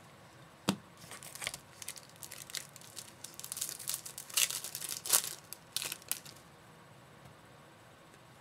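Plastic wrapper of a baseball card pack being torn open and crinkled in the hands: a sharp tap just under a second in, then about five seconds of crackling rips and crinkles that stop near the end.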